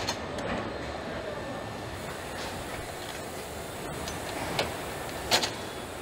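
Car assembly hall ambience: a steady mechanical hum and hiss of the production line, broken by a few short sharp knocks, the loudest a little past five seconds in.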